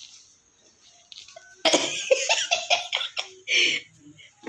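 A woman laughing: a quick run of short bursts starting about one and a half seconds in, ending with a last breathy burst.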